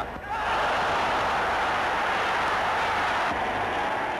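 Large stadium crowd cheering, a steady dense wall of noise that comes up about half a second in and thins slightly near the end.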